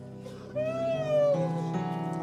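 Soft background music of sustained, steady chords that change about halfway through. Over it, from about half a second in, comes one long wavering cry-like voice that rises and then falls.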